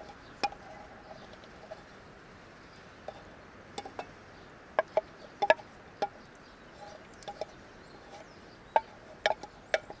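Wooden spoon scraping and knocking against the inside of a small metal pot, an irregular string of sharp clicks and taps, some with a brief metallic ring. The taps bunch up about halfway through and again near the end.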